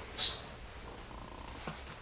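A short, sharp hiss from the speaker's mouth about a quarter second in, then a pause filled by a low, steady room hum.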